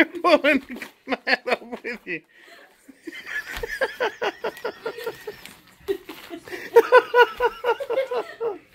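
People talking and laughing, with quick runs of laughter about a second in and again near the end.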